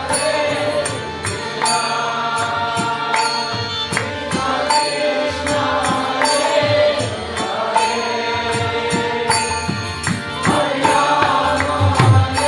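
Devotional kirtan chanting: a sung chant over a steady harmonium drone, with a clay mridanga drum played by hand in quick, sharp strokes.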